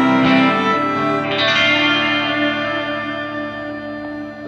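Live band's closing chord: electric guitar with fiddle and harmonica, a last chord struck about a second in and left ringing, slowly fading out.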